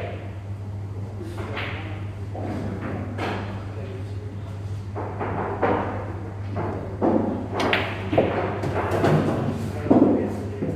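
Pool cue striking the cue ball and billiard balls knocking together in a few sharp clicks, mostly in the second half, among people talking in the hall and a steady low hum.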